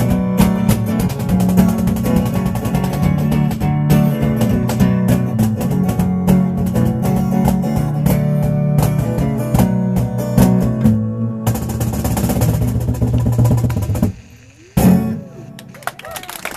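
Acoustic guitar strummed hard and steadily through an instrumental ending, its last chords ringing out and stopping about two seconds before the end. A small audience then starts applauding.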